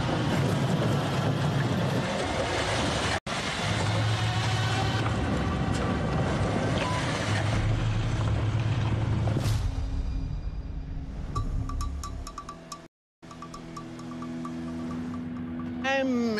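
A tracked Bombardier snow vehicle's engine running loudly under tense background music for about the first ten seconds. After that the music carries on alone, quieter, with steady held notes and a regular pulsing tone.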